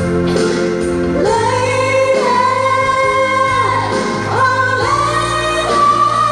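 A woman singing long held notes into a microphone over instrumental accompaniment, played through a sound system. The voice comes in about a second in, after a short stretch of accompaniment alone.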